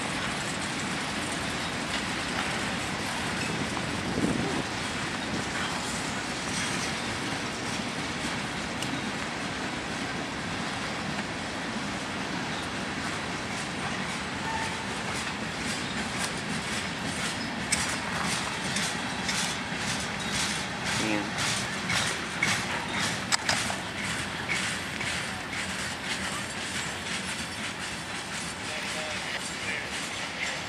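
Freight train of covered hoppers and boxcars rolling past close by, a steady rumble of steel wheels on rail. Partway through, a run of regular clickety-clack sets in as the wheels cross rail joints, and the sound eases off slightly near the end.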